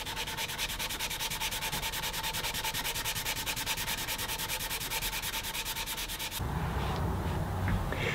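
Hand wet-sanding with 220-grit sandpaper, rubbing wipe-on polyurethane into the finger joints of a wooden box: quick, even back-and-forth rubbing strokes that stop abruptly about six seconds in.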